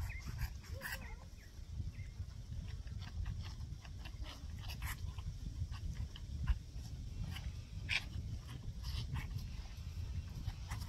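Calves suckling from milk feeding bottles: an irregular run of short wet sucks, slurps and gulps. Wind rumbles on the microphone throughout, with one louder thump a little past the middle.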